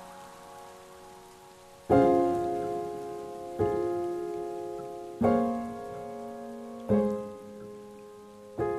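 Lo-fi background music: soft keyboard chords struck four times, one every second and a half or so, each dying away, over a faint steady hiss.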